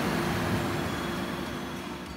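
Steady hum and hiss of brewery machinery, with a faint held tone, slowly fading.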